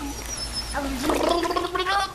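A child's voice gurgling through pool water at mouth level: a wavering, bubbly call that starts a little before halfway and rises in pitch toward the end.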